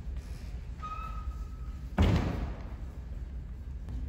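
A steady electronic beep lasting about a second, then a single heavy thump about two seconds in, ringing out briefly in a large hard-floored hall.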